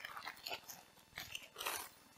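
Thin plastic crinkling and rustling in short, irregular bursts as a water bladder in a clear plastic bag is handled.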